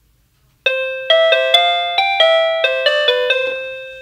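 SadoTech RingPoint driveway alert receiver playing its electronic chime tune, a quick run of bell-like notes that starts just under a second in and fades away toward the end. It is the alert for the red zone, set off by motion at the paired sensor.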